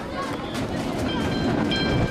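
Streetcar running on its rails, with a high, steady ringing tone sounding in the second half.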